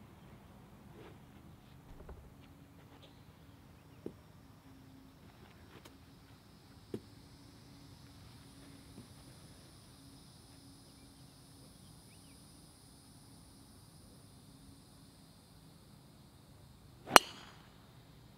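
A driver striking a golf ball off the tee: one sharp, loud crack about a second before the end, after a long quiet stretch of outdoor ambience.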